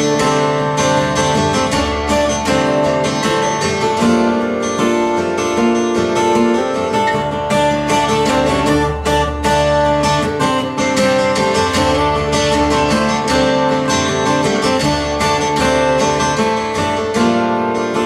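Two acoustic guitars playing an instrumental passage of a folk song together, picked and strummed.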